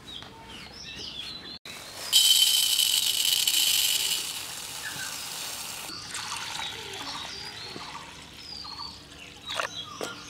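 Water poured from a jug onto dry red lentils in a clay bowl. The stream sets in about two seconds in and is loudest for the first two seconds, then settles to a softer splashing that dies away after about six seconds. Birds chirp in the background.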